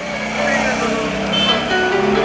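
Busy street heard from inside a slowly moving car: voices and some music from outside, over the low sound of the car.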